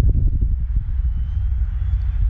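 Gusty wind buffeting the microphone with an uneven low rumble, over the faint, thin, high whine of a distant 80 mm electric ducted fan model jet, a Freewing JAS-39 Gripen, rising slightly in pitch about a second in.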